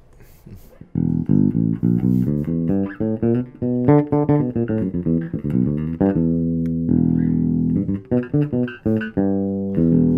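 Fender 75th Anniversary Jazz Bass played fingerstyle through its vintage-style single-coil bridge pickup alone, with the tone knob fully open. A quick run of plucked bass notes starts about a second in, with a longer held note past the middle.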